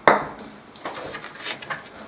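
Small knocks of workbench handling: a sharp tap at the start, then a few softer wooden clicks as thin pine strips are picked up off a cutting mat.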